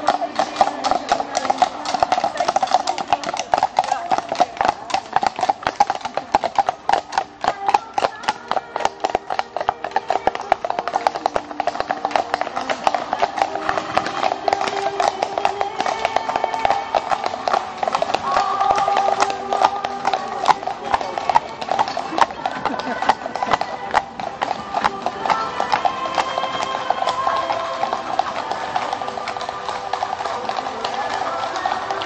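Horses' hooves clip-clopping on an asphalt road, a dense clatter of many hoofbeats in the first half that thins out later. Music and voices run underneath.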